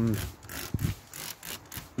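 Hand trigger spray bottle squirting a diluted Milton solution onto a fabric soft top: several short squirts, each a brief hiss, after a voice trails off at the start.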